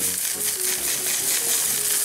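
Strawberry Krispies puffed rice cereal pouring from a cardboard box into a bowl: a steady patter of many small dry grains landing on each other.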